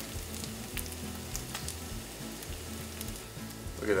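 Wild boar taco meat sizzling in a frying pan on an electric stove, a steady hiss scattered with small pops and crackles.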